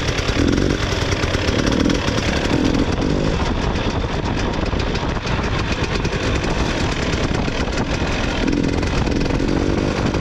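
Two-stroke 300 cc enduro motorcycle engine under way, its buzzing note rising and falling with the throttle, with a few stronger throttle swells early on and again near the end.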